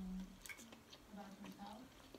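Soft, low closed-mouth 'mm' hums from a person eating, one at the start and a longer one past the middle. Under them is faint scraping and clicking of a knife cutting steak on a plate.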